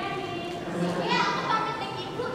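Teenage girls' voices speaking lines of dialogue.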